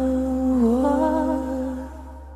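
A woman's singing voice holds one long note with a slight dip in pitch about two-thirds of a second in, over soft sustained keyboard accompaniment; the note stops just before the end.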